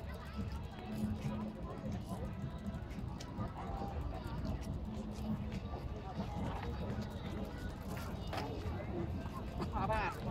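Indistinct voices of people chatting in stadium stands over a steady low rumble.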